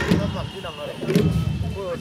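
People talking close by, several voices mixed together, over a few low beats of long drums.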